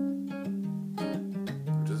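Acoustic guitar, capoed at the fifth fret, playing held chords with fresh plucked strokes about every half second.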